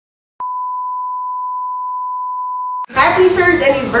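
A steady electronic beep at one fixed pitch, starting about half a second in and cutting off abruptly after about two and a half seconds, just before a woman starts speaking.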